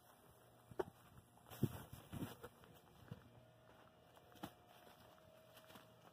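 Near silence broken by a few faint footsteps and scuffs on dry grass and dirt, clustered in the first half and once more past the middle.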